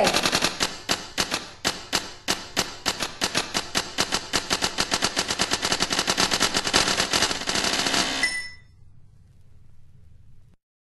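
Rapid, continuous typing on an Olivetti Lettera 32 manual typewriter: a fast, even run of sharp key and typebar strikes, about eight to ten a second. The clicking stops about eight seconds in with a brief ringing tone, leaving a faint low hum.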